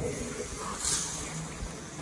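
A bump right at the start, then the rustle of a motorcycle riding jacket's fabric being handled, with a brief louder rustle about a second in.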